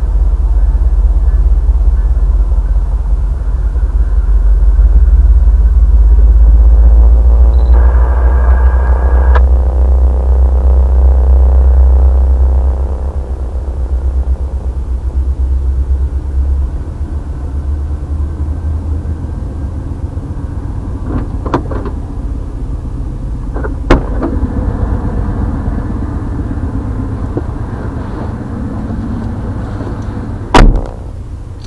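Freight train of autorack cars rolling past at a grade crossing: a heavy low rumble heard from inside a vehicle, louder for the first dozen seconds and then easing. A brief higher squeal comes about eight to nine seconds in, and a few sharp clicks come later.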